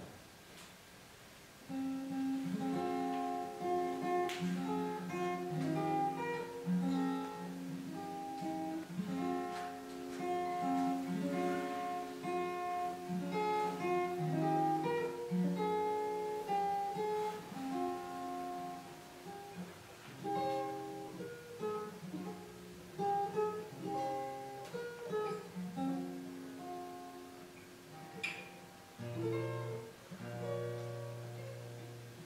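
Solo steel-string acoustic guitar playing picked chords and a melody line, without singing, starting about two seconds in.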